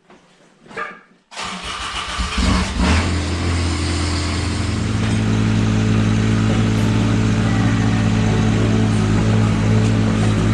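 Ventrac 4500Z tractor's engine starting: it begins about a second and a half in, picks up over the next second or so, then settles into a steady idle.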